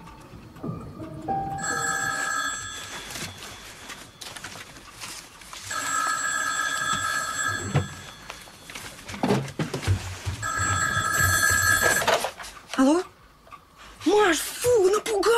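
Landline telephone ringing three times, each ring about two seconds long with a gap of about two and a half seconds between them. The ringing stops near the end as the call is answered.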